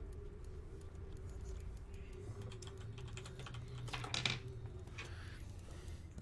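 Faint, irregular clicking of someone typing on a computer keyboard, picked up through a video-call microphone over a low steady hum, with one short louder noise about four seconds in.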